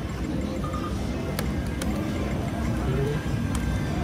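Casino floor din: a steady mix of machine noise and distant voices, with short electronic slot-machine tones and a few sharp clicks.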